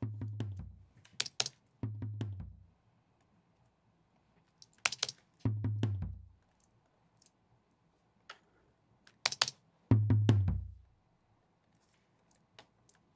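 Recorded tom drums played back from the mix: four deep tom hits, each ringing out for well under a second, spaced a few seconds apart. Sharp computer keyboard clicks fall between them.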